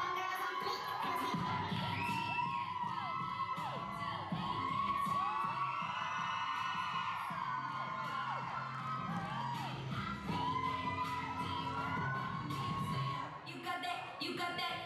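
Music for a hip-hop dance routine playing with a bass line, under an audience cheering with many high-pitched whoops and screams.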